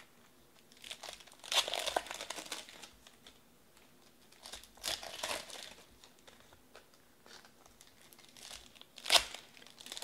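Foil trading-card pack wrappers crinkling and being torn open by hand, in several bursts: a long one about one and a half seconds in, another around five seconds, and a short sharp one near the end.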